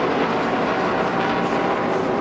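A pack of NASCAR stock cars racing past together, their V8 engines running at full throttle in one steady, unbroken drone.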